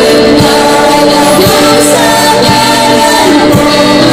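Live gospel worship music: a woman singing lead into a microphone over a band with electric guitar and a drum kit keeping a steady beat.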